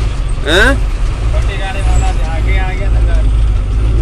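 A truck's diesel engine running, heard from inside the cab as a steady low rumble.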